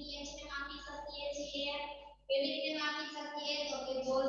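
A woman's voice speaking, with a short break a little over two seconds in.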